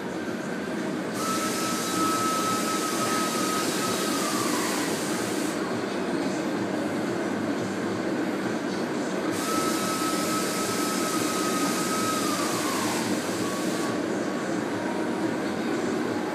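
Machine noise in a vehicle workshop: a steady hum throughout. Twice, a whining motor or air tool starts with a hiss, runs a few seconds at one pitch and then winds down.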